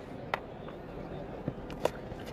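A cricket bat striking a tennis ball once near the end, the loudest of a few sharp knocks over a low, steady outdoor background noise.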